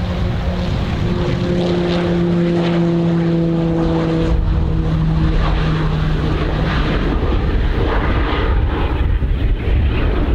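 Embraer EMB-314 Super Tucano's Pratt & Whitney PT6A turboprop at takeoff power, its propeller droning as the aircraft rolls down the runway. The drone's pitch drops slightly about a second in as it passes, and its steady tone fades around seven seconds as it moves away, leaving a low rumble.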